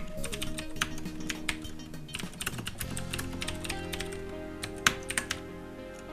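Computer keyboard typing: a quick run of keystrokes that thins out after about three seconds, with a few more near the end, over soft background music with sustained notes.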